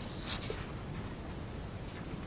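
Brush pen scratching on paper in a few quick short strokes, the loudest just after a quarter second in, while inking a drawing.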